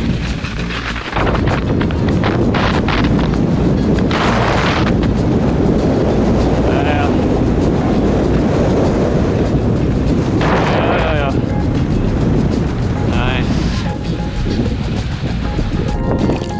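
Steady wind rumble on the microphone of a body-worn camera during a snowkite ride on skis, with two louder hissing bursts about four seconds and ten seconds in. A faint voice or music with wavering pitch comes through a few times.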